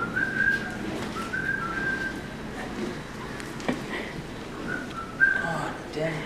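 A person whistling idly: short phrases of a few high, steady notes that step between two pitches, with pauses between them. A couple of light knocks sound partway through and near the end.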